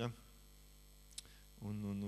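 A steady low electrical hum under a pause in a man's speech through a microphone, with one small click about a second in. Near the end the man lets out a drawn-out, even-pitched hesitation sound, like a held "eee".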